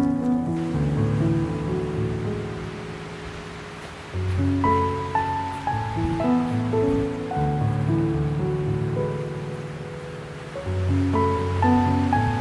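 Slow instrumental background music, held notes over a low bass line. It fades down and a new phrase begins about four seconds in.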